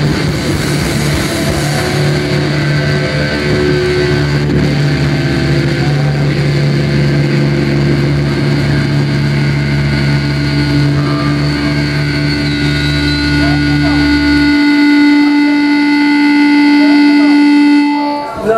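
Electric guitar and bass left ringing through the amps as a loud, steady drone of held notes and feedback tones. The low bass note cuts off about two-thirds of the way through, while a higher guitar feedback tone swells toward the end.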